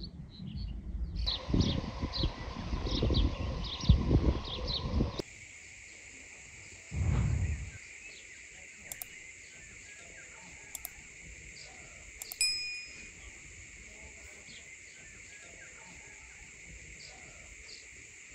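Wind buffeting the microphone, with birds chirping, for about five seconds. The sound then switches suddenly to a steady high hiss, broken by a short low gust, two clicks, and a bright ding about halfway through, from a subscribe-button animation.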